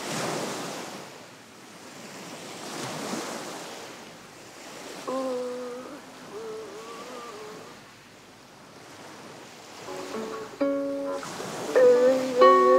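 Surf-like rushing noise that swells and fades in slow waves, with a few held, wavering notes about midway and plucked guitar notes starting near the end as the song's intro begins.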